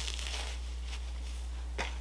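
Faint rustling of a synthetic wig's fibers being shaken out, over a steady low electrical hum of room tone.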